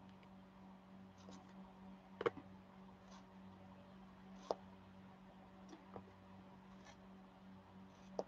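Soft, scattered clicks and taps of a diamond-painting drill pen picking drills from a plastic tray and pressing them onto the sticky canvas, the sharpest about two seconds in, over a faint steady low hum.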